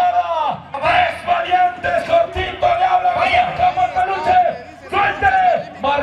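A man's voice shouting in long, drawn-out calls over a crowd, broken by a few short pauses.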